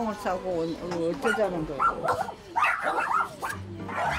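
Several small dogs whimpering and yapping, over a woman's scolding voice.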